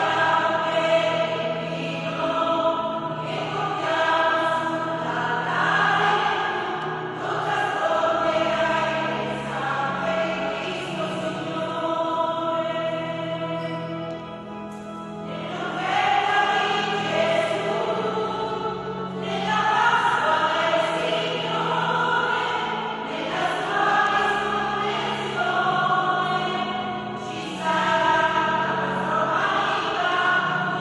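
Church choir singing, in several sustained phrases with short breaks between them.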